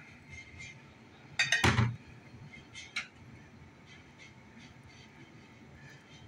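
A utensil clinks briefly against a dinner plate while toppings go onto a plated omelet. The loudest clink comes about a second and a half in, with a lighter tap about three seconds in, and little else in between.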